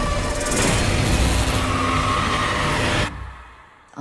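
Horror trailer sound design: a loud, dense wash of noise and music with a few held tones. It fades away from about three seconds in, dropping almost to silence.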